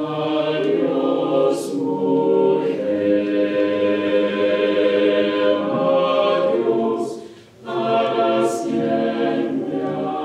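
Mixed chamber choir singing a cappella, holding sustained chords. The voices break off briefly about seven and a half seconds in, then come back in together.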